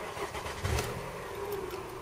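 Toyota Camry engine cranked by its starter and catching, then settling to idle at about 1000 rpm.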